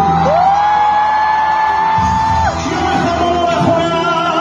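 Live pop band playing with guitars, keyboards and drums. A voice holds one long note that slides up into pitch at the start and stops about two and a half seconds in.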